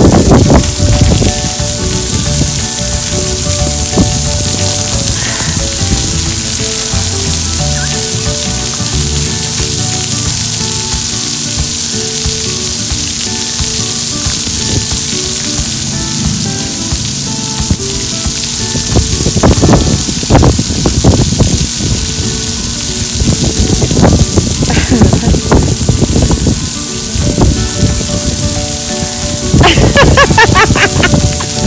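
Splash pad water jets spraying and raining down on concrete: a steady hiss of falling water that grows louder and choppier in the last ten seconds.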